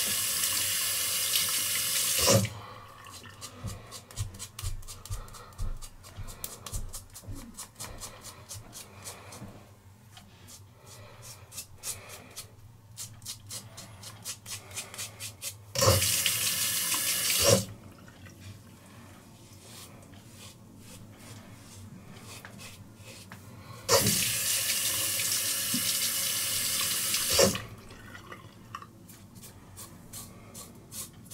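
A faucet runs three times, in the first couple of seconds, briefly around the middle and for a few seconds near the end, as a five-blade cartridge razor (Harry's) is rinsed. Between the rinses come quiet, rapid, short scraping strokes of the razor cutting stubble.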